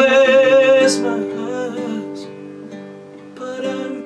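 A man's held sung note ends about a second in, then a nylon-string classical guitar plays on alone, its chords ringing and slowly fading before the playing picks up again near the end.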